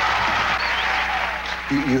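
Theatre audience applauding as a song ends; a man's voice starts near the end.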